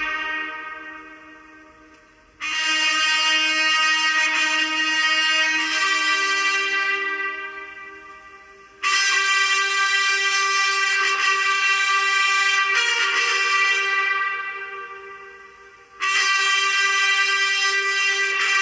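Ceremonial trumpet fanfare sounding the President's arrival, played as long held brass chords in phrases. Each phrase starts suddenly, about every six to seven seconds, and fades away over several seconds.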